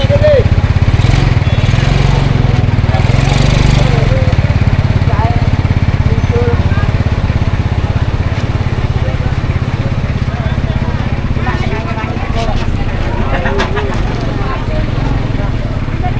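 A small motorcycle engine running close by with a steady low putter, with people talking around it.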